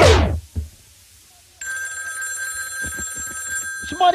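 A music track ends with a quick falling sweep, then about a second of near silence. About one and a half seconds in, a steady high ringing tone starts suddenly and holds, with faint low thumps beneath it.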